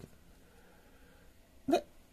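Near silence with faint room tone, broken near the end by one short spoken syllable.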